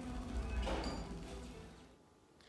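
Film soundtrack playing through the home theater: a low rumble with faint music, fading out near the end.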